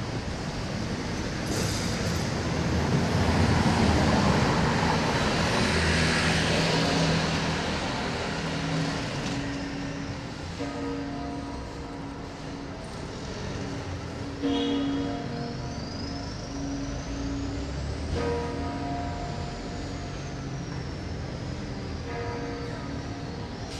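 A car passes close by on the street, loudest about four seconds in. From about halfway, bells ring steadily, with fresh strikes a few seconds apart over light street traffic.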